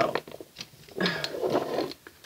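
Light clicks, then about a second in a longer rustle, as a card and small objects are handled and set in place on a tabletop altar.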